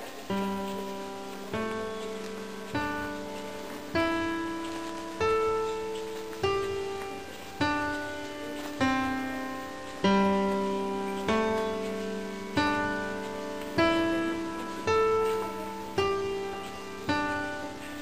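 Background music: an acoustic guitar playing slow plucked chords, a new chord about every second and a quarter, each one ringing out and fading before the next.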